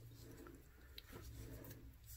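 Near silence: room tone with a faint low hum and one soft tick about a second in.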